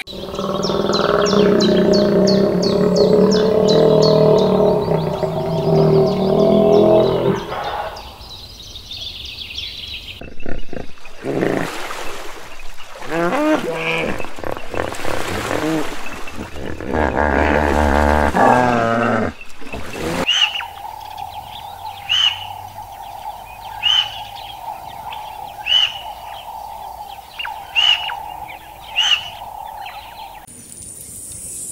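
A run of animal calls: a long low call for the first several seconds, then a string of shorter grunting and honking calls, then a steady hum with a short high chirp about every two seconds.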